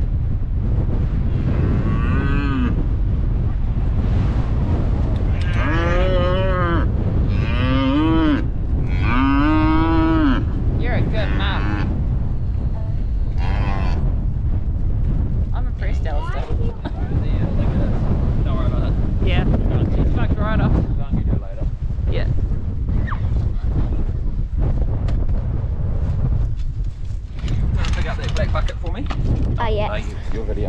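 Angus cattle mooing: several drawn-out calls in the first half, fainter ones later, over a steady low rumble.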